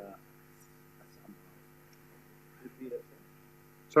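Steady electrical hum on the lecture-hall sound system, made of several steady tones. A faint, distant voice comes in briefly near the end.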